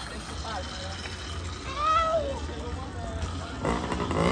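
Voices of onlookers: one drawn-out call rising and falling about two seconds in, then several people shouting together near the end, over a low steady hum.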